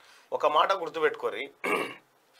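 A man talking in Telugu, with a short breathy, throaty sound near the end.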